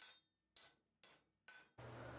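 Near silence, with faint, evenly spaced hammer blows on red-hot iron at the anvil, about two a second.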